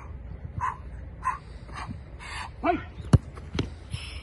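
A football kicked hard, a single sharp thud a little over three seconds in, followed about half a second later by a softer thud as the goalkeeper dives at the shot. Before the kick come four short calls, which the tagger took for a dog barking.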